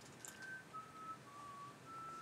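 A person whistling a slow, faint tune in four separate held notes, the last starting near the end and held longer.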